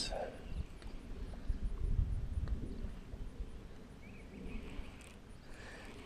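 A baitcasting reel being cranked slowly close to the microphone: a faint irregular rumble of handling with light clicks, loudest about two seconds in and fading afterwards.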